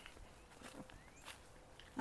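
Near silence: faint outdoor ambience with a few soft ticks.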